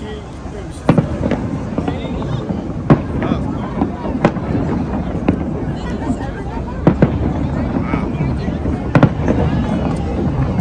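Aerial fireworks bursting, a sharp bang every one to two seconds, with a quick double bang near the end, over a steady murmur of crowd voices.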